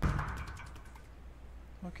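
A short burst of the project's soundtrack played back from the video editor's timeline, starting suddenly and fading out over about a second.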